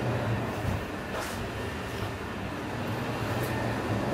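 Steady rushing background noise with a low hum in a commercial kitchen, with gas burners alight under the pans.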